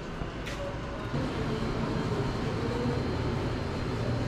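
Steady low mechanical hum, growing a little louder about a second in.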